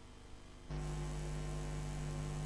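Steady electrical mains hum that comes in suddenly less than a second in and holds evenly: the commentary audio line going live just before the commentator speaks.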